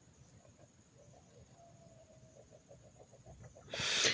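A chicken clucking faintly, with one drawn-out note in the middle and then a quick run of clucks that grows louder. A louder rustle starts just before the end.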